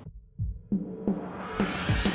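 Outro music starting: a few low beats, then a rising swell that builds toward the end into fuller music.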